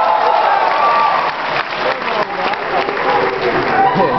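Audience clapping, with voices over it near the start and the end.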